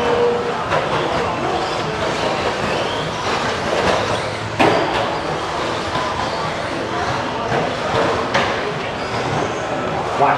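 A pack of 1/10-scale electric stadium trucks racing on an indoor dirt track: brushless motors whining and tyres churning dirt in a continuous mix, with a sharp clack about halfway through and another near the end from trucks landing jumps or hitting each other.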